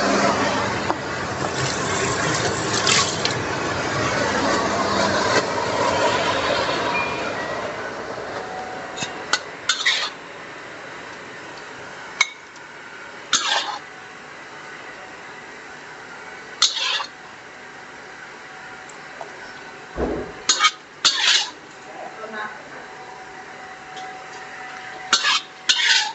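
Stainless steel spatula stirring stir-fried squid and vegetables in a black wok, a dense rustling for the first several seconds. After that come separate scrapes and clinks of the spatula on the wok as the food is scooped out onto a plate.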